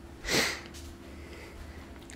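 A person's quick breath in, once, about a third of a second in, over a faint steady hum.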